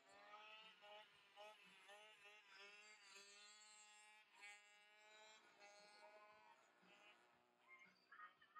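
Faint, distant race-bike motors on a track: a pitched whine that rises and falls over and over as the riders work the throttle.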